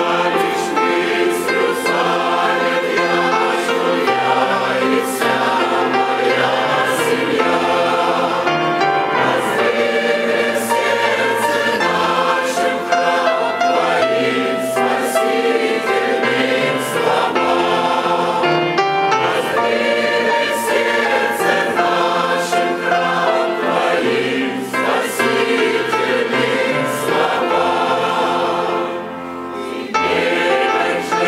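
Mixed choir of men and women singing a Russian-language hymn in sustained harmony.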